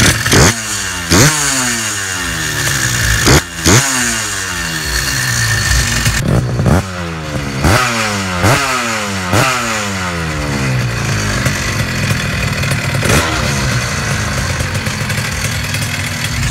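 MXS Minarelli two-stroke engine on a motorized bicycle idling, blipped up about nine times. Each rev rises sharply in pitch and then falls back to idle.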